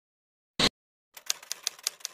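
Typewriter keystroke sound effect: a quick run of sharp clicks, about six a second, starting a little past halfway, preceded by a single short burst of noise about half a second in.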